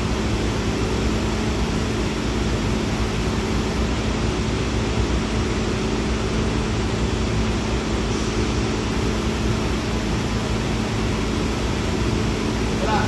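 Steady machinery noise with a constant low hum, unchanging throughout.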